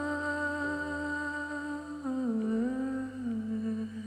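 Music: a voice humming long held notes over a sustained low accompaniment, the melody gliding down in pitch about two seconds in.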